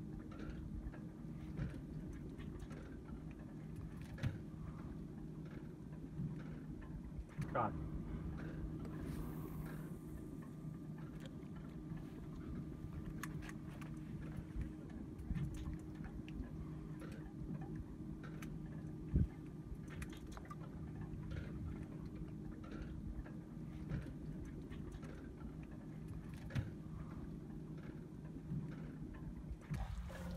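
Boat motor running with a steady low hum, under scattered light clicks and knocks, with one sharper knock about 19 seconds in.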